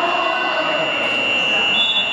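A gym scoreboard buzzer sounding one long, steady, high-pitched tone during a stoppage in a basketball game, with crowd chatter in a large hall. Just before the end a second, higher tone takes over.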